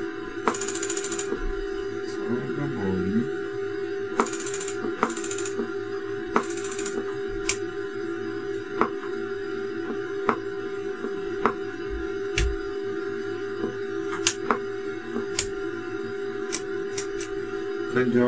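KL-400 linear amplifier clicking as it switches, sharp clicks at irregular intervals of about a second, over a steady mid-pitched tone with a few short bursts of hiss in the first seven seconds. The clicking is put down to the current-limited bench power supply, which makes the amplifier keep switching.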